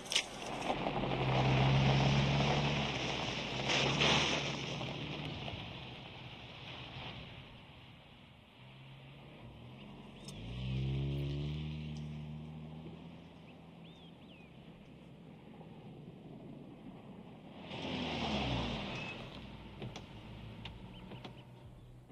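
A car driving by on a country road. Its engine and tyre noise swell and fade several times, and the engine note drops as it passes about ten seconds in and again near the end.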